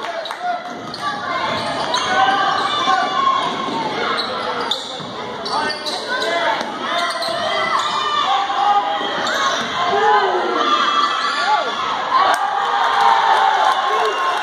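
Basketball game in a gym: the ball bouncing on the hardwood court amid continual calls and shouts from players and spectators, all echoing in the hall.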